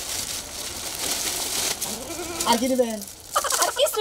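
A large plastic bag rustling and crinkling as it is handled, for about the first two and a half seconds. After that come short bursts of a wavering, high-pitched voice.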